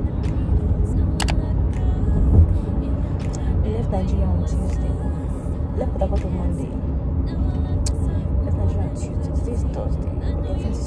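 Steady low road rumble of a moving car, heard from inside the cabin, with music and talking over it.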